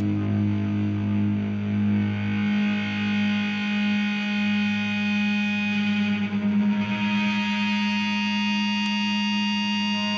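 Distorted electric guitar left ringing in sustained feedback as a hardcore punk song ends, the held notes wavering slowly. A new, higher feedback tone comes in about seven seconds in.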